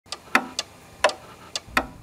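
Clock ticking: a tick-tock of sharp clicks, about three a second, alternating louder and softer strokes.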